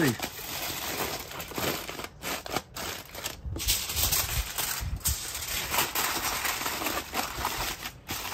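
Aluminium foil crinkling and crackling as hands fold and crimp it tightly around a rack of ribs, an irregular rustle.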